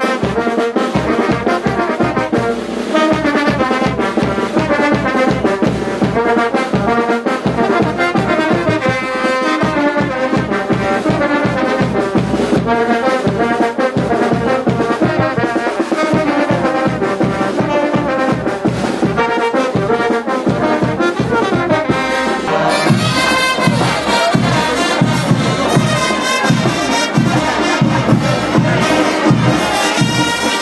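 Brass band playing a lively dance tune, with trumpets and trombones over a steady beat. The sound grows brighter and fuller about three-quarters of the way through.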